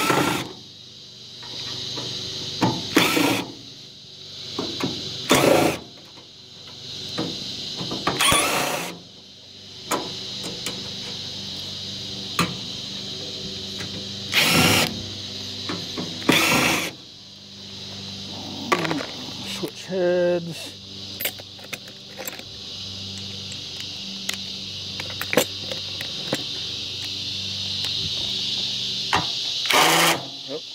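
Cordless screw gun with a Phillips bit backing screws out of a microwave's sheet-metal casing, in short runs of a second or less several times over, with clicks and knocks between. A steady chirring of insects carries on behind.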